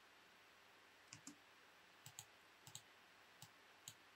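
Near silence broken by about seven faint, short computer mouse clicks, some of them in quick pairs.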